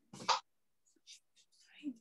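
A short whispered, breathy bit of speech about a quarter second in, followed by a few faint soft sounds.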